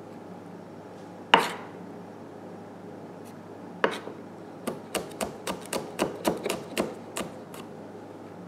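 Cleaver chopping on a wooden chopping board, mincing garlic and red chilies. A single sharp chop comes about a second in and another near four seconds, then a quick run of about four chops a second.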